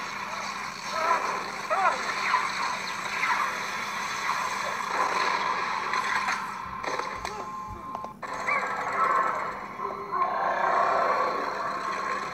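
An animated film's soundtrack played through computer speakers and picked up in the room: voices over music and effects, with a sharp click a little past the middle.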